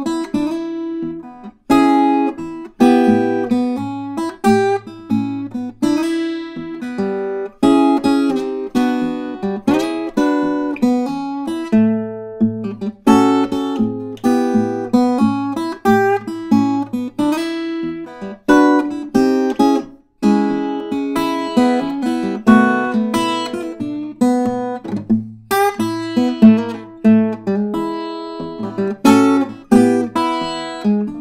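Fingerstyle blues played on an acoustic flattop guitar: single-note licks answered by chord hits, over recurring low bass notes, continuing throughout.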